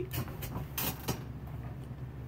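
A few brief rustles and knocks of a person moving and handling something, over a steady low hum.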